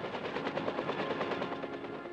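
Bell UH-1 "Huey" helicopter rotors thudding in a fast, even beat as the helicopters lift off.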